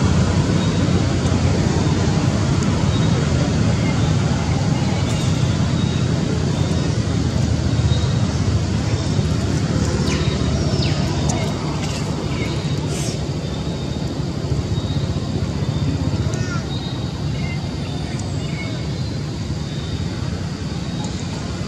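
Steady, fairly loud low rumbling background noise, with a few faint short chirps around the middle.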